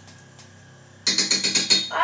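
A sudden loud rattling clatter of rapid, close-spaced strikes, starting about a second in and running on.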